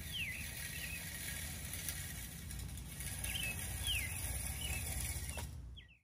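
A small songbird singing a short phrase of down-slurred whistled notes, twice, about three seconds apart, over a low steady rumble.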